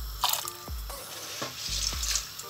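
Red kidney beans dropped by hand into water in an aluminium pressure cooker, splashing briefly about a quarter second in and again near the end.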